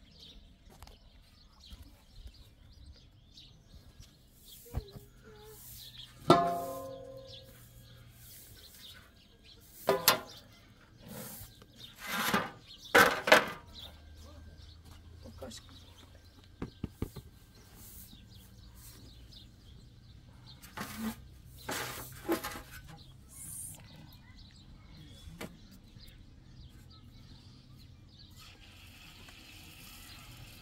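Scattered knocks, clatters and rustles of kitchenware being handled: a plastic bowl, a cloth cover and a metal tray with a wooden flour sieve, with one louder ringing knock about six seconds in.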